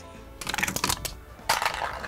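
Crushed aluminum drink cans clattering on asphalt: a quick run of light metallic clicks about half a second in, then a second short clatter around a second and a half.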